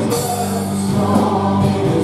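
Live praise-and-worship music: a church band with keyboard and guitar accompanies singers, their notes held steadily.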